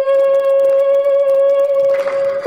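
A woman's voice holding one long sung note, steady in pitch, in a traditional Badaga drama song.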